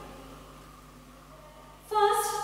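A pause in a woman's speech: quiet room tone with a faint steady low hum, and her speaking starts again near the end.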